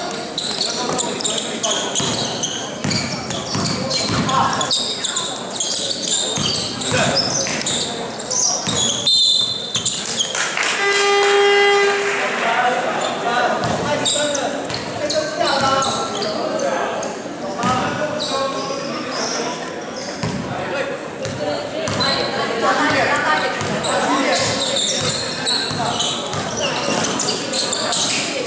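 Indoor basketball game: the ball bounces on the hardwood court amid players' shouts, all echoing in a large gym. About eleven seconds in, a game buzzer sounds once for over a second.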